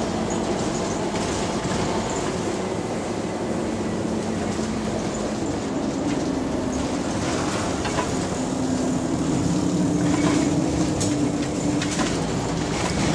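Double-decker bus drivetrain heard from inside the lower deck: a steady rumble with a pitched axle whine that rises in the second half as the bus gathers speed. There are a couple of sharp rattles from the bodywork near the end.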